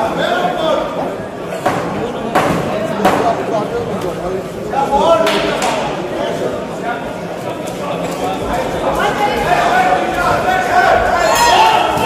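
Voices calling out in a large hall, with several sharp smacks of boxing gloves landing punches, clustered around two to three seconds in, again a little after five seconds, and once near the end.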